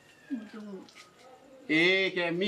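A short lull with faint voices, then a woman's voice breaks in loudly near the end with a drawn-out exclamation.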